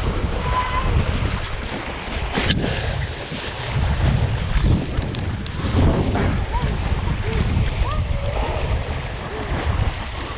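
Wind buffeting the microphone over the rush and slap of water against a windsurf board sailing fast through choppy water, swelling and easing as the board moves. A single sharp knock about two and a half seconds in.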